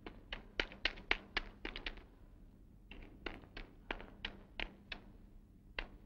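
Running footsteps on the ground of a film soundtrack: quick sharp taps, about three or four a second, stopping briefly about two seconds in and again near the end.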